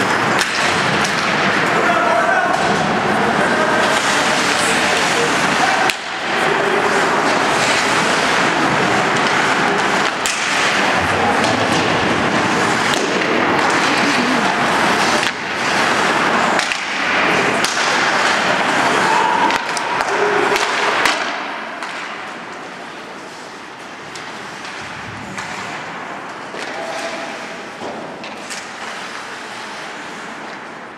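Ice hockey game sounds: skates scraping on the ice, sharp clacks and thuds of sticks, puck and boards, and brief shouts from players and spectators. The din is loud for the first two-thirds, then falls off somewhat about twenty seconds in.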